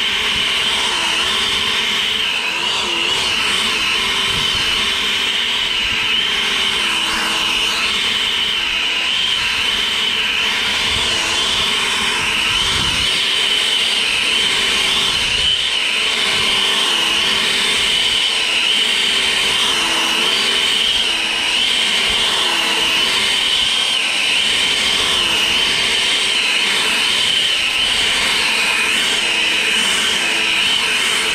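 EGO POWER+ 650 CFM battery-powered handheld leaf blower running at full throttle, a steady high fan whine, with the turbo button pressed in short surges; a lower tone in it dips briefly again and again.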